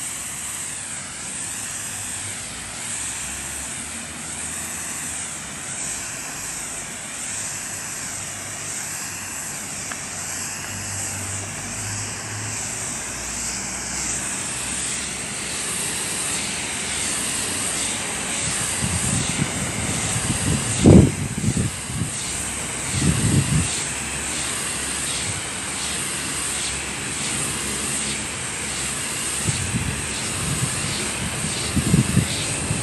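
Steady hiss of a spray polyurethane foam gun spraying roof insulation. A few low thumps come about two-thirds of the way in.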